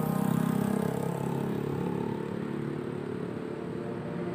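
A motorcycle engine passing close by and fading as it moves away, over the general noise of road traffic.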